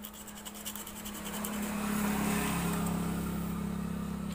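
A motor vehicle's engine hum growing louder, then dropping in pitch about two and a half seconds in, as of a vehicle passing close by. Faint light clicks in the first second or so.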